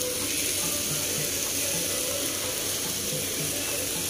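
Blended tomato sauce poured from a blender jar into a pan of beef and diced potatoes: a steady rush of pouring liquid that keeps an even level throughout.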